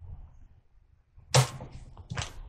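Thin Bible pages being leafed through by hand: one quick, sharp swish of a page turning a little after halfway through, the loudest sound, trailing off in rustling.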